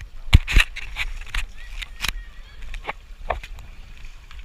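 A handful of sharp knocks and slaps on water, the two loudest close together near the start and a few lighter ones later, from paddle boarding: paddle and board striking the water and each other.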